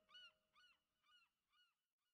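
Near silence, with a faint short chirp repeating about three times a second and fading out over the first two seconds, like the decaying repeats of an echo.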